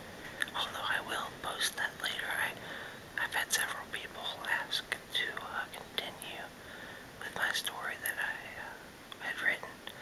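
A man whispering, reading a story aloud in a soft, steady whisper.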